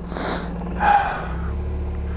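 Suzuki Burgman scooter engine running with a steady low hum, the engine note growing stronger about a second and a half in as the scooter starts to move off. A short sniff comes near the start.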